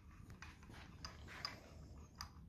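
Very faint, sparse light metal clicks as a camshaft timing sprocket is handled on the engine, over near-silent room tone.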